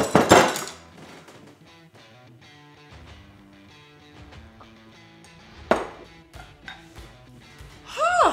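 Background music playing steadily. In the first half-second, loud knocks as fists pound a wooden bar top to drop a shot glass of sake into a glass of beer, and one single sharp knock about six seconds in.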